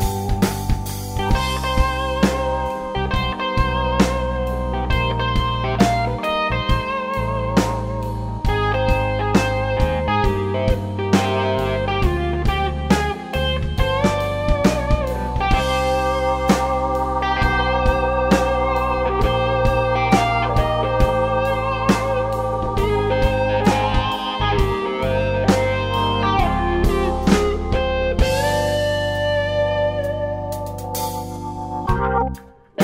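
Blues band playing an instrumental passage with no vocals: electric guitar lead lines with bent notes over held organ chords and a steady drum beat.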